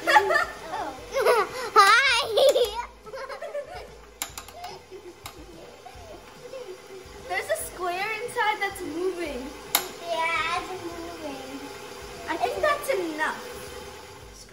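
Young girls' voices singing and vocalising without clear words, in several spells, over a steady hum.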